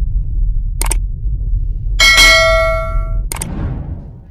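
Intro sound effects over a low rumble: a short click just under a second in, then a bell-like ding at about two seconds that rings on for more than a second, and another click a little after three seconds.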